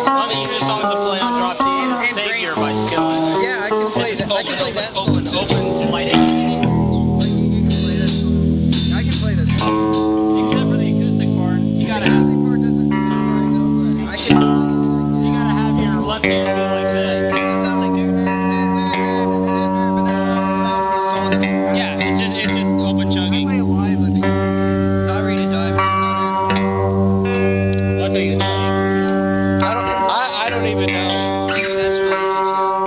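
Amateur rock band's electric guitars and bass guitar playing through amplifiers: long held chords that change every second or two.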